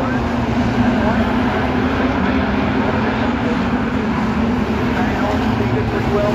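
Several street-stock race car engines running together in a steady drone as they lap the track, under indistinct voices.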